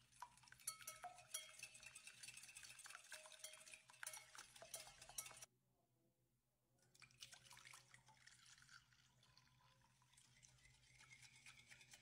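Wire whisk beating eggs in a glass bowl, a quick run of clinks and scrapes of the wires against the glass. It stops abruptly about halfway through, and a second or so later the whisking starts again in the batter.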